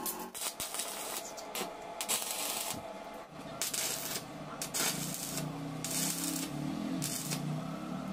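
Stick arc welder crackling and sputtering in several short bursts as the corners of a steel angle-iron frame are tack-welded.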